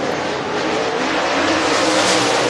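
Two dirt super late model race cars' V8 engines running hard at speed around a clay oval: a steady, loud engine noise that grows a little louder near the end.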